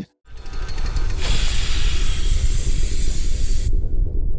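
Edited-in sound effect: a deep steady rumble, with a loud hiss that comes in about a second in and cuts off sharply near the end.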